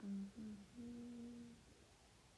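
A young woman humming with her mouth closed: two short notes, then a longer, slightly higher held note.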